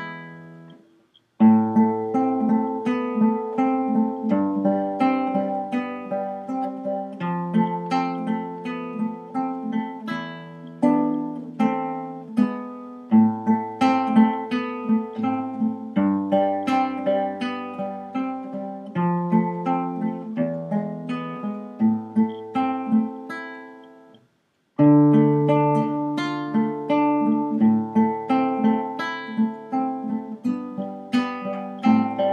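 Classical nylon-string guitar played fingerstyle, a steady run of plucked melody notes over held bass notes. The playing dies away to silence briefly about a second in and again about 24 seconds in, then starts again each time.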